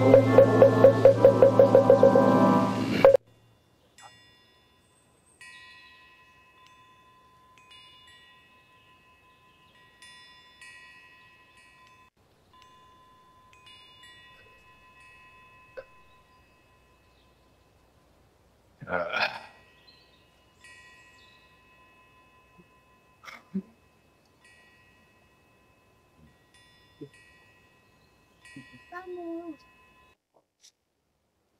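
Chanted music with a quick regular knocking beat stops abruptly about three seconds in. Then faint wind chimes ring on and off, several high tones together, with a short noise about two-thirds of the way through and a few small clicks.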